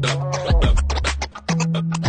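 Music mixed live on a DJ controller, with scratching on the jog platters over a track with deep, downward-sliding bass. The music cuts out briefly about one and a half seconds in, then comes back.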